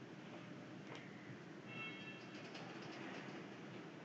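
Faint steady room noise with a single click about a second in and a brief, faint high-pitched tone near the middle.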